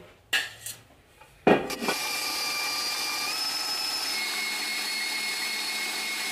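A knock, then an electric stand mixer switching on about two seconds in and running steadily, its wire whisk beating a cream cheese filling, with a steady motor whine.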